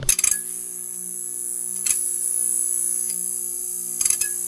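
Electric neon-sign sound effect: a quick run of crackling clicks as it flickers on, then a steady buzzing hum with a bright high hiss, broken by a couple of single crackles.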